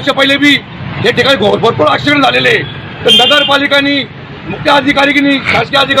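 A man speaking loudly and forcefully in short bursts, with the steady noise of road traffic behind him.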